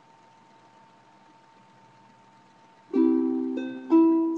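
Near silence with a faint steady high whine for about three seconds, then a chord strummed on a stringed instrument, ringing and struck again twice just before the end. The chord is a D add4 add2.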